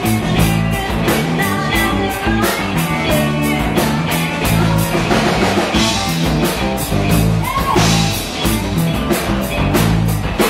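Live rock band playing loudly: electric guitars over a drum kit keeping a steady beat.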